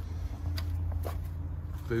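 A low, steady rumble with a faint hum above it, and two faint clicks about half a second and a second in.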